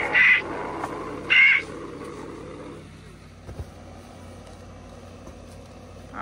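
Halloween animatronic prop with glowing red eyes playing a spooky sound effect: a rasping, growling sound with two short shrill cries about a second apart. The effect fades out after about three seconds, leaving a low steady hum.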